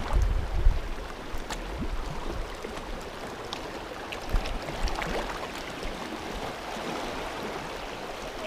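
Sea water lapping and washing around low shoreline rocks, with a few faint ticks, and low wind rumble on the microphone in the first second.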